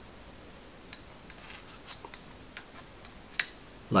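A few faint, light metallic clicks and scrapes of a small metal tool's tip against the stainless-steel build deck of a rebuildable dripping atomizer, the loudest a sharp click about three and a half seconds in.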